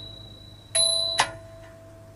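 A bright, bell-like metallic ring struck about three-quarters of a second in and damped abruptly about half a second later, leaving a faint lingering tone. It is the metal percussion of a nang talung shadow-puppet ensemble.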